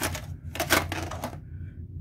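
A VHS cassette being handled in its plastic clamshell case: sharp plastic clicks and clatters, the loudest near the start and about 0.7 s in, over a low steady hum.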